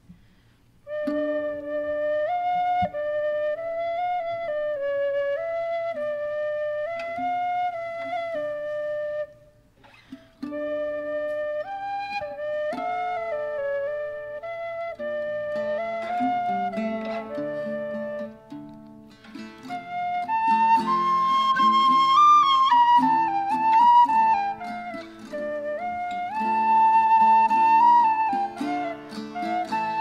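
Live acoustic performance of a traditional Ukrainian folk song. It opens with a slow solo melody that breaks off briefly around nine seconds in. Lower accompaniment joins about fifteen seconds in, and a higher, louder melody line enters near twenty seconds.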